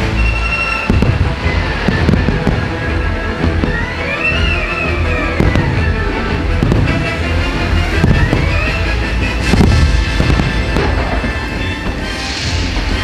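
Aerial fireworks bursting, with repeated sharp bangs and crackles, over loud show music.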